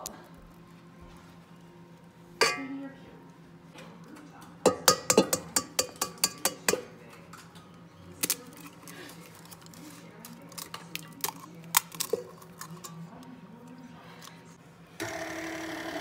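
Stainless steel mixing bowl knocking and clinking as it is handled and fitted to a stand mixer, with a quick run of sharp metallic knocks about five to seven seconds in. About a second before the end, the stand mixer's motor starts with a steady whir.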